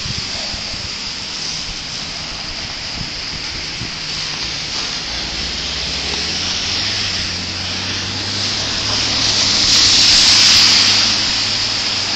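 Traffic on a wet, slushy street: a steady hiss of tyres on wet pavement that swells as a car passes close about ten seconds in, with a low engine hum underneath from about halfway.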